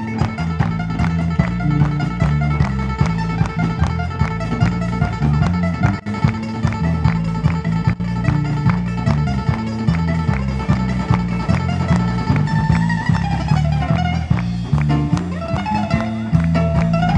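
Live band music: ukulele with electric bass and drums, playing continuously with a steady, regular bass line.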